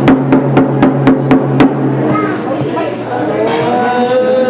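A hand-held Tibetan frame drum struck about four times a second, over a man's low held voice. The drumming stops about one and a half seconds in, and the man goes on singing, settling into a long held note near the end.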